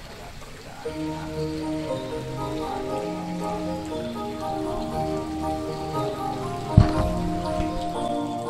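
Background music comes in about a second in: slow, sustained notes and chords over a bass line, changing pitch every second or so. A single sharp thump sounds near the end, over the music.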